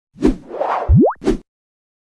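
Logo-reveal sound effects: a sharp hit, a whoosh, a quick tone sliding steeply upward in pitch, and a second hit. They stop abruptly about a second and a half in.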